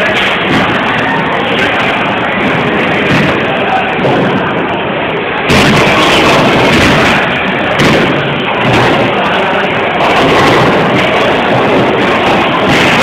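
A loud, muddled mix of voices and music, getting louder about five and a half seconds in.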